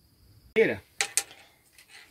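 A short voice sound, then two sharp clicks a fifth of a second apart about a second in.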